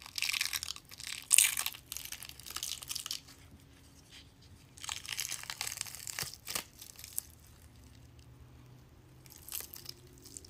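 Special-effects wound makeup being peeled off the skin of the face by hand: crackling, tearing sounds in bursts, a long one at the start, another about five seconds in, and a short one near the end.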